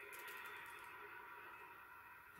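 Near silence: faint, steady room tone.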